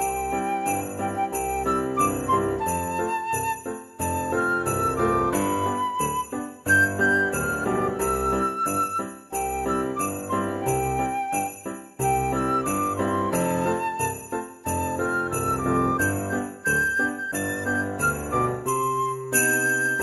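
Background Christmas music: jingle bells shaken on a steady beat under a simple melody and bass line.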